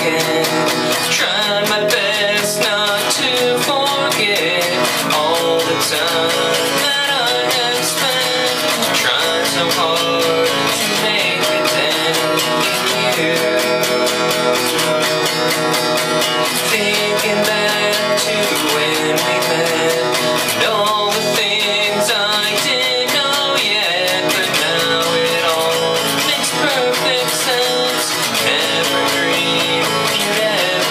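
Cutaway acoustic guitar strummed in a steady rhythm as the accompaniment to a song.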